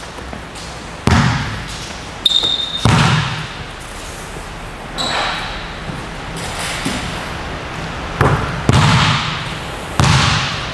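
A basketball bouncing on a gym's wooden floor, several separate bounces with echoing tails, the last three coming quickly near the end. A brief high squeak sounds about two seconds in.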